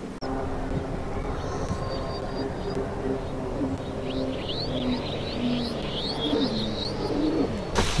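Wild birds singing in woodland: a quick run of high, falling chirps through the second half, over scattered lower, steadier calls.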